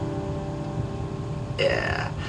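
The last strummed chord of an acoustic guitar dying away, then near the end a short voiced sigh from the player that falls in pitch, a breath of relief at the end of the song.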